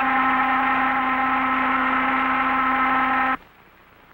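A ship's steam whistle blowing one long, steady blast that cuts off suddenly about three and a half seconds in.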